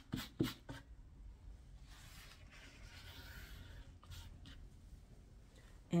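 A few light clicks in the first second, then faint scratchy rubbing as a gloved hand handles and wipes the paint-covered board under a poured vase.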